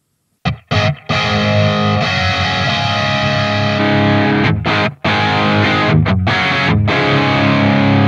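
Distorted electric guitar chords played through a Line 6 Helix dual cab block, starting about half a second in and ringing on with short breaks between chords. The block's delay is set to none, so its two cab impulse responses, one minimum-phase and one raw, are out of phase with each other, which makes it sound bad.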